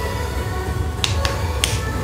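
Three sharp finger snaps in the second half, over music with a low, steady bass.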